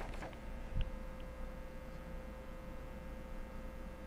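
Steady low electrical hum and hiss of a desktop recording setup, with a soft low thump about a second in and a couple of faint ticks.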